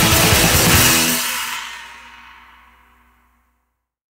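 Raw black metal track ending: the full band with fast pounding drums stops about a second in, and the last guitar chord and cymbals ring and fade away to silence over about two seconds.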